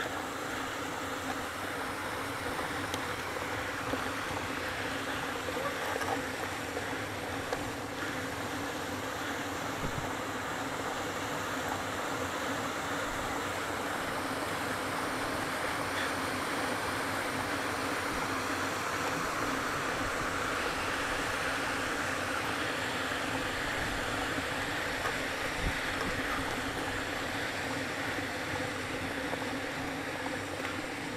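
Steady rushing wind noise on the microphone of a bicycle-mounted camera climbing a steep mountain road, with a faint steady hum underneath.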